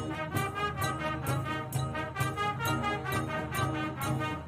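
High school marching band playing: a brass melody over a steady drum beat.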